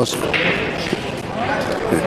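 Room noise of a busy billiard hall: a low murmur of voices and a brief hiss, with no ball strikes.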